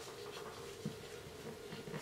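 Faint rubbing and light handling noise of nitrile-gloved hands pressing soft fondant down onto a plastic embossing mould, with one small click a little under a second in, over a steady faint hum.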